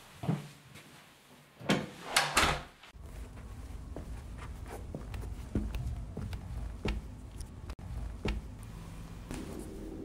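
Door shutting, a few loud knocks close together about two seconds in. After it come scattered softer knocks over a low steady rumble.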